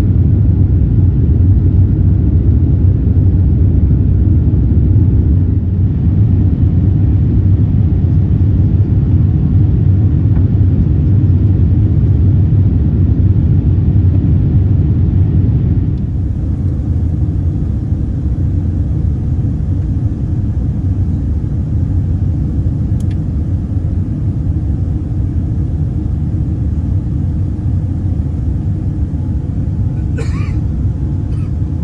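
Boeing 787-10 cabin noise in the climb just after takeoff: a steady low rumble of engines and airflow, a little quieter about halfway through.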